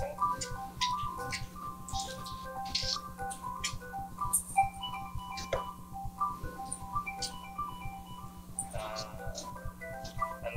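Electronic music live-coded in FoxDot: a synth plays a repeating pattern of short, plinking pitched notes with scattered sharp clicks.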